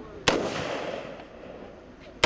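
A single shot from a 5.56 mm rifle about a quarter second in, its echo dying away over more than a second.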